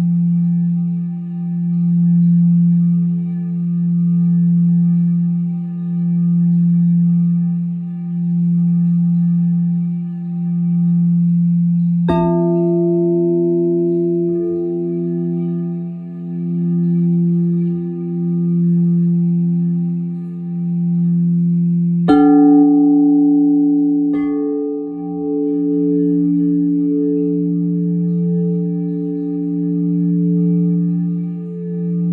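Crystal singing bowls ringing in a steady low hum that swells and fades about every two seconds. A bowl is struck about twelve seconds in, adding higher ringing tones, and two more strikes follow a little after twenty seconds in.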